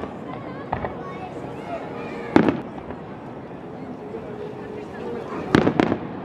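Aerial firework shells bursting at a distance: a faint bang about a second in, a loud one about two and a half seconds in, and a quick cluster of bangs near the end.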